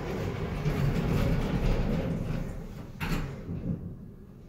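Elevator doors sliding along their track with a low rumble, ending in a sharp thump about three seconds in as they close.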